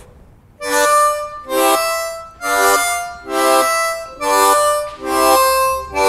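C diatonic harmonica played in second position: a slow phrase of about seven separate chords with short gaps between them, starting just over half a second in, each chord tongue-blocked and cut off before the next.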